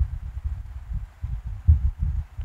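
Low, irregular rumbling thumps with no pitch, the strongest about a second and a half in.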